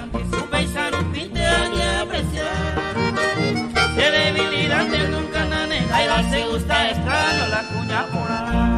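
Instrumental break in a Paraguayan folk song: acoustic guitars over a steady bass beat, with a sustained melody line carrying above them.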